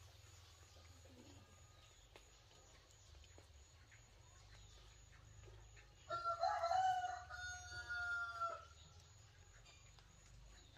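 A rooster crowing once, a single drawn-out call about six seconds in, lasting about two and a half seconds and sagging slightly in pitch at the end.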